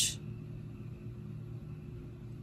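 Steady low hum and faint room noise, with no distinct sounds over it.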